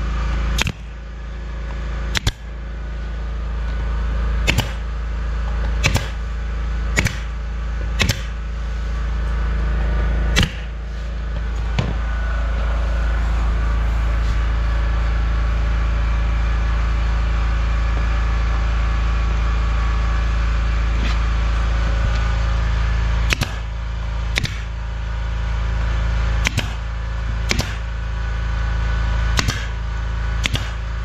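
Pneumatic nail gun firing nails into a wooden floor trim strip: a sharp shot every second or two, a pause of about twelve seconds in the middle, then another run of shots. A steady low hum runs underneath.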